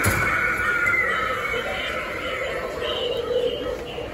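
A Halloween animatronic prop's recorded voice effect: after a knock at the start, a high, voice-like cry slides down in pitch over the first second or two, then carries on more quietly.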